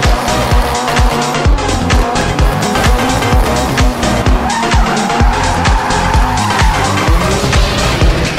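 Music with a steady beat mixed over a Ford Fiesta rally car's engine and squealing tyres as it spins donuts.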